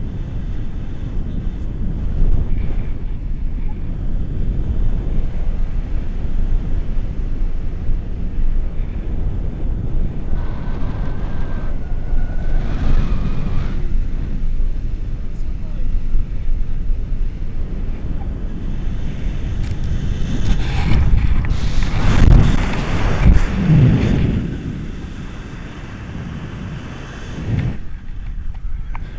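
Wind buffeting the camera microphone in flight under a tandem paraglider, a steady low rumble that swells about three quarters of the way through, then eases off.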